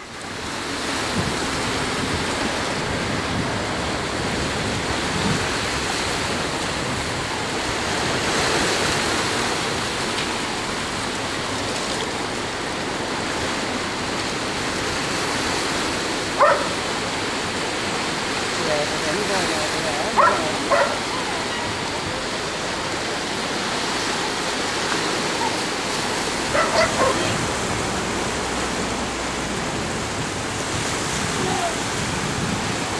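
Steady rush of a shallow stream running over stones. A dog barks a few times, briefly, about halfway through and again near the end.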